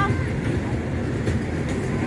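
Steady low rumble of outdoor noise, with a short high voice call right at the start.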